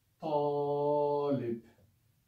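A man's voice holding one long 'aa' vowel at a steady pitch for over a second, then trailing off: the long alif of the Arabic word ṭālib (طالب) drawn out slowly to show how a long vowel lengthens the letter before it.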